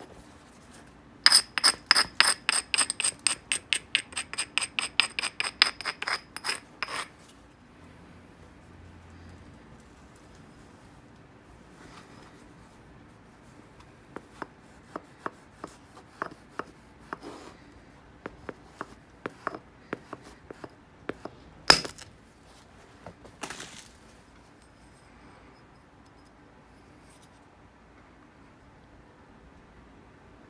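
Obsidian biface being knapped. First comes about six seconds of rapid scraping strokes, roughly five a second, abrading the edge to prepare a striking platform. Then, after a pause, scattered light clicks, and a sharp ringing strike of an antler billet on the glass, the loudest sound, with another blow soon after.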